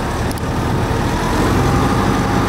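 A 2007 Jacobsen wide-area rotary mower's engine running steadily while the machine stands still.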